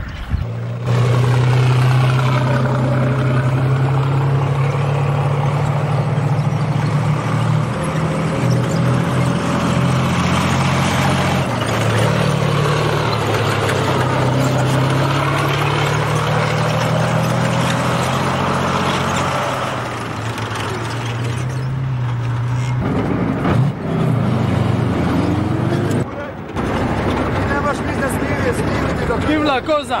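Tank's diesel engine running close and loud as the tank drives past, its pitch rising and falling. The sound shifts abruptly twice near the end.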